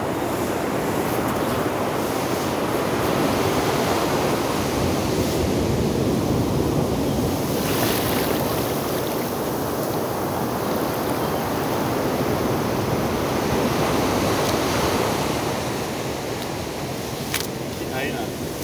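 Sea surf washing up a sandy beach, a steady rush of breaking waves that swells around the middle, with a sharp click near the end.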